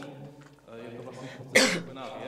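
A single loud, sharp cough about one and a half seconds in, over low, indistinct voices.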